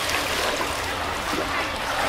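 Water sloshing and lapping around hippopotamuses swimming in a pool, a steady watery noise.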